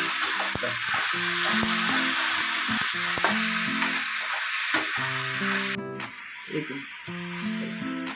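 Chopped tomatoes and onions sizzling in a hot metal kadhai, stirred with a slotted steel spoon, with a few light scrapes and knocks of the spoon. The sizzle cuts off suddenly about six seconds in. Background music with steady, stepping notes plays throughout.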